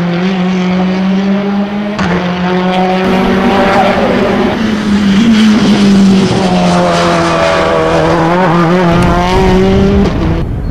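Ford Focus BTCC touring car's engine running hard as it laps the circuit: a loud, steady high engine note that steps and dips in pitch several times, with an abrupt break about two seconds in.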